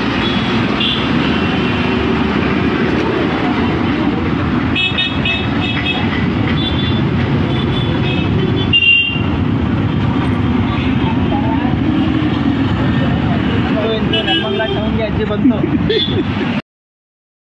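Busy town street traffic, a steady roar of passing vehicles with horns honking in short beeps several times, mixed with people's voices.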